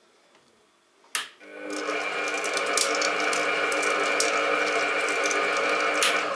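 Starwind SPM7169 planetary stand mixer switched on with a click of its speed knob about a second in. The motor spins up and runs steadily with a whine while the whisk turns in the empty bowl, then it is switched off at the end and the pitch falls as it winds down.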